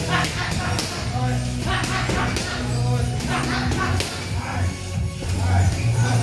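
Music playing, with sharp slaps of gloved punches landing on focus mitts during pad work.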